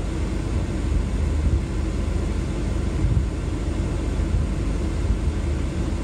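Steady low rumble of a running vehicle, with a light hiss above it and no distinct events.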